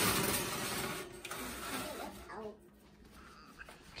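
Metal baking sheet scraping and rattling as it is slid onto a wire oven rack, loudest in the first second and then fading.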